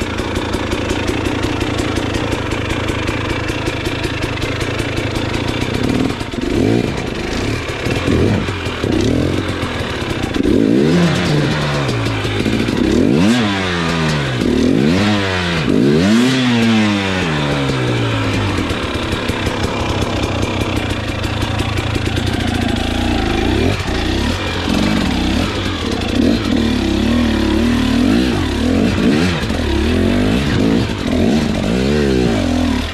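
KTM 300 XC two-stroke dirt bike engine running at low revs, then revved up and down several times in quick succession about a third of the way in, before settling back to a steadier, uneven throttle.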